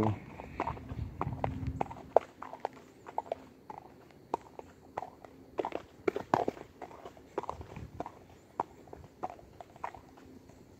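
A horse walking bareback down a muddy dirt road: irregular hoofbeats, about two to three steps a second.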